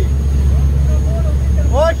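Steady low drone of boat engines at sea under a constant hiss.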